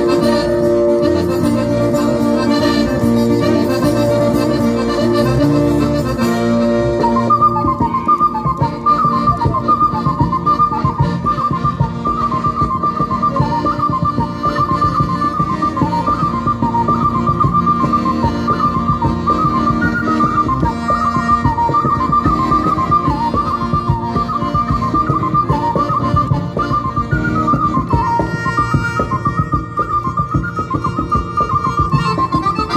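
Sardinian folk dance music: accordion and acoustic guitar play chords, and about seven seconds in, a small mouth-blown wind instrument takes the lead with a fast, high, heavily ornamented melody over the accompaniment.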